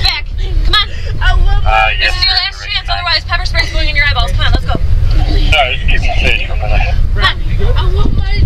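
A young girl crying and wailing in high, wavering cries, over a steady low rumble.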